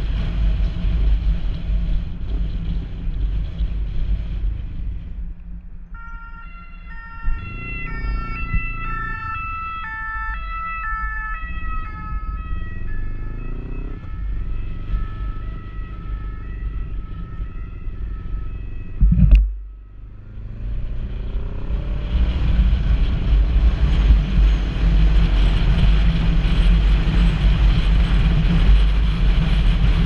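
Wind noise and motorcycle engine at speed, fading as the bike slows. From about 6 s to 19 s a two-tone emergency-vehicle siren alternates between two pitches. There is a brief loud thump about 19 s in, then the wind and engine noise build again as the bike accelerates.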